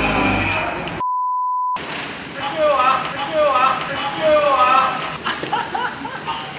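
Background music, cut off about a second in by a short steady beep tone. Then a man laughs, a run of repeated 'ahahaha' cries that rise and fall in pitch.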